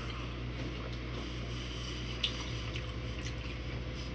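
Steady low electrical hum with faint soft clicks, and one sharper click a little past halfway.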